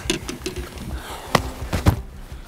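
Light knocking and handling noises on a small boat's deck, with two sharp knocks in the second half, about half a second apart.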